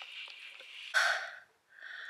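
A woman's sharp breathy gasps from the cold of rinsing herself with cold water: one loud breath about a second in and another near the end.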